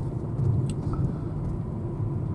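Car driving along a road, heard from inside the cabin: a steady low engine and road rumble.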